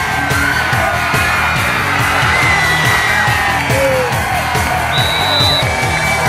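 Rock music with a fast, steady drum beat playing over a sports highlight reel.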